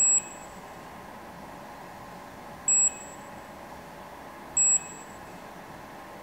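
Observ 520 skin-analysis camera beeping three times, short high-pitched electronic beeps about two seconds apart, as it runs its photo capture sequence.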